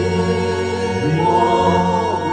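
Worship singing over an electronic organ: the organ holds long sustained chords while voices sing a gospel hymn line above them.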